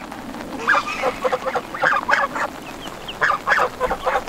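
African geese honking in short, irregularly repeated calls, mixed with clucking from a flock of Niederrheiner and Bielefelder chickens.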